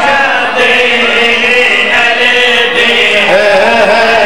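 A large crowd of men chanting together, loud and continuous, in response to a preacher's call.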